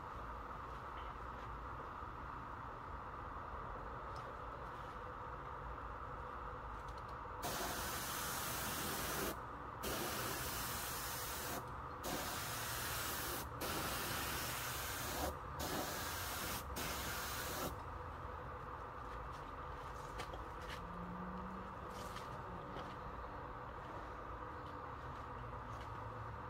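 Compressed-air spray gun laying clear coating onto a headlight lens at about 57 psi: about six passes in ten seconds, each a loud hiss of air and spray that starts and cuts off sharply.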